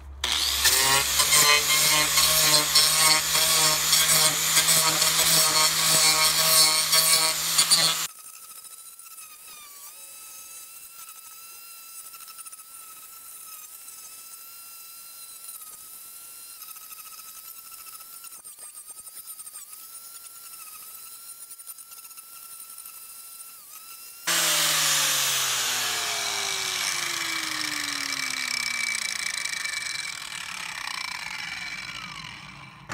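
Angle grinder with a King Arthur Lancelot chainsaw-tooth carving disc shaping soft cedar. It is loud for the first eight seconds, then a quieter steady high whine that dips briefly under load. Near the end a louder stretch follows in which the pitch falls steadily as the motor winds down.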